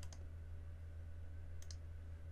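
Faint clicks from the computer used to operate the software: one click, then a quick pair of clicks about a second and a half later, over a steady low hum. They are the clicks of selecting a part and deleting it.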